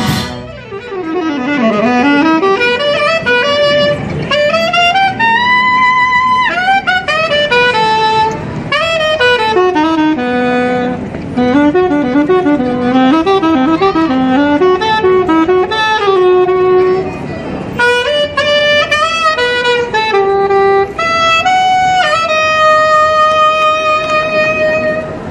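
A wind band of saxophones, brass and percussion playing a melodic passage led by the saxophones, with quick runs up and down and a long held note near the end. The passage begins as a loud full-band chord cuts off.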